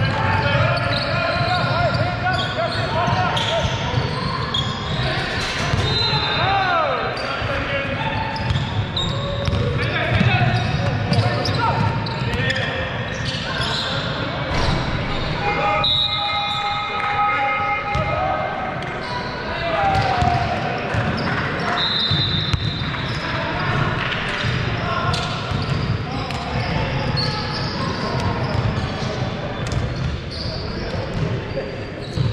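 Basketball game on a hardwood court: a ball bouncing, with short knocks and indistinct players' voices calling out, echoing in a large hall.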